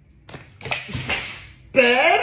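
Thick mustard pouring out of a large bucket and splattering onto a tabletop in a few wet splashes. Near the end comes a loud, drawn-out vocal exclamation that slides down in pitch.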